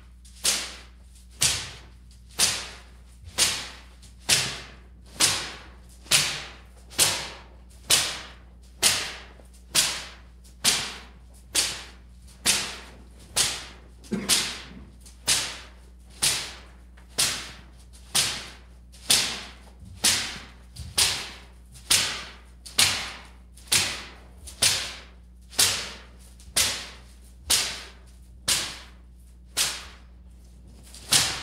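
A bundle of palm fronds being swished and swept down across a stone altar top, about once a second in an even rhythm, each stroke a sharp swish.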